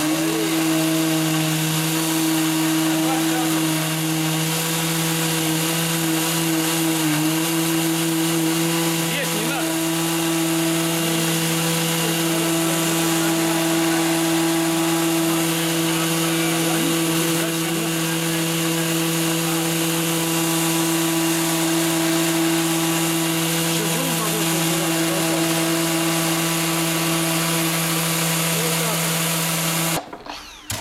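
Mirka random orbital sander running steadily while sanding a wooden board, a loud constant hum with a steady pitch, stopping at the end.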